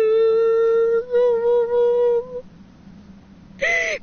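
A grieving woman's weeping voice, drawing out a long, steady wailing note for about two seconds, then a short, higher sob near the end.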